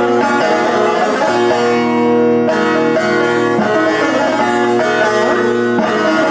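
Solo bağlama (long-necked Turkish saz), its strings plucked in a quick, continuous run of notes over sustained ringing pitches.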